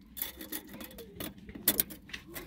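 A steel tape measure being handled and hooked against a suspension bump stop: scattered light clicks and rubbing, with two sharper clicks near the end.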